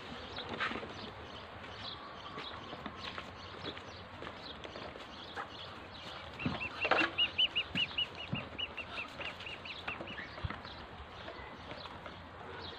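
Muscovy ducklings feeding at a plastic feeder: scattered taps and clicks of beaks pecking, and about halfway through, a rapid run of high peeps, about five a second, lasting a few seconds.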